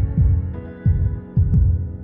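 Outro music: deep bass notes that slide down in pitch, about two a second, under sustained keyboard-like chords.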